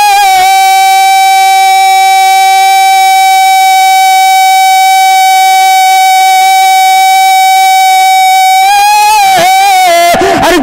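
A man's voice holding one long, high sung note of a naat into a microphone, steady for about nine seconds before it wavers and breaks off near the end.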